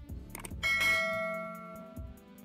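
A bright bell chime sound effect rings once, just after a short click, about half a second in, then fades away over about a second. It is the notification-bell ding of a subscribe animation. Background music with a steady low beat carries on underneath.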